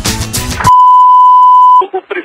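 Music with a beat cuts off about a third of the way in, replaced by a loud, steady, high-pitched test-tone beep held for about a second. This is the reference tone that goes with TV colour bars.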